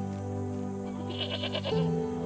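Soft background music with long held tones. About a second in, a goat bleats once, briefly.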